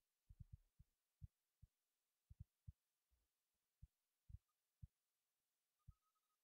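Near silence, broken by about a dozen faint, brief low thumps at irregular intervals.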